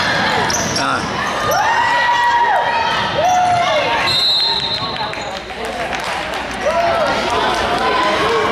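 Basketball game on a hardwood gym floor: sneakers squeaking in short rising-and-falling squeals, the ball bouncing, and voices echoing in the hall. A single steady high whistle blast sounds about four seconds in.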